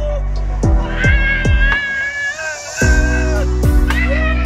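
Background music: deep, sustained bass notes that slide down in pitch under a high, wavering melody line. The bass drops out for a moment about two seconds in, then comes back.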